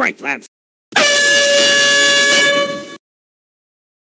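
Handheld canned air horn blasting one loud, steady note for about two seconds, starting about a second in and tailing off.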